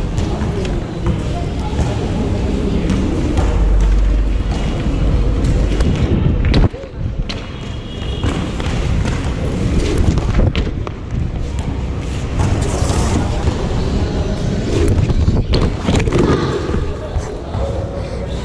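BMX bike being ridden on a concrete floor, heard close up from a camera carried by the rider: a constant rough rumble of wind on the microphone and rolling tyres, broken by several sharp knocks and thuds of the bike hitting the ground.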